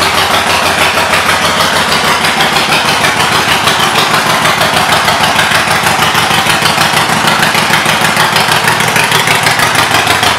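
2018 Harley-Davidson Forty-Eight's air-cooled 1200 cc V-twin idling steadily through Vance & Hines aftermarket pipes, with an even, loud pulsing beat.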